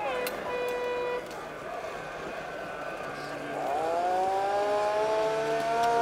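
Ford Escort Mk2 rally car engine: the revs drop at the start and hold a steady note for about a second, then the engine note climbs steadily under acceleration from a little past halfway, falling off sharply at the very end.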